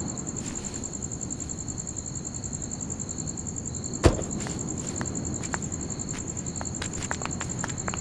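Crickets chirping in a steady, rapid high trill over a low background rumble of night ambience. A single sharp knock comes about four seconds in, and a few light ticks near the end.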